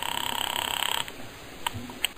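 Telephone ringing: one buzzing ring lasting about a second, followed by a sharp click of the line being picked up just before the caller speaks.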